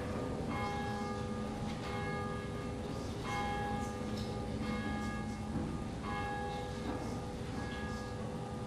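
A church bell tolling, a stroke every second or so, each ringing on into the next. It is rung to mark the start of worship.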